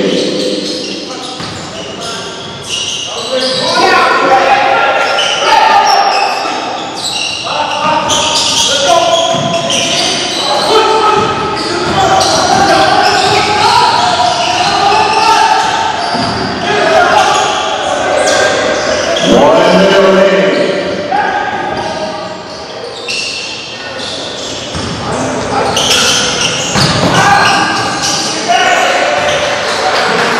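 A basketball bouncing on a hardwood gym floor during live play, amid indistinct voices, all echoing in a large hall.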